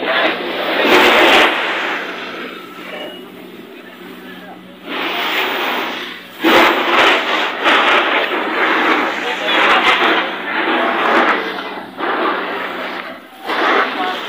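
People talking among a group of bystanders, with a quieter lull about three to five seconds in.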